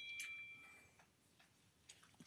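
A faint high chime: a few steady tones sounding together that fade out within about a second.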